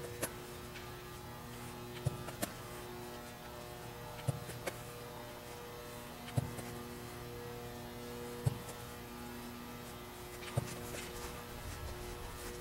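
A steady electrical hum with a sharp knock about every two seconds, some of them doubled in quick succession.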